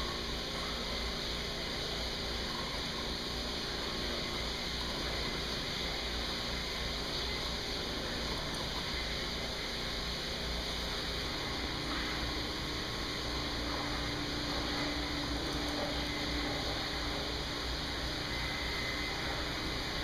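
E/One one-horsepower grinder pump running submerged in a water tank, a steady whir, its grinder working on a cotton T-shirt.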